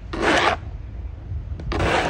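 Snow shovel scraping across snow-covered pavement in two short strokes, about a second and a half apart.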